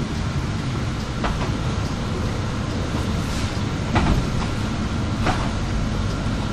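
Inside a city bus on the move: steady low engine and road rumble, with a faint steady whine above it. Three short sharp rattles come about a second in, at about four seconds, and near the end.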